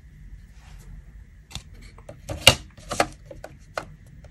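Plastic set square being set down and positioned on a drawing board against its parallel rule: a series of light clicks and knocks starting about a second and a half in, the loudest near the middle.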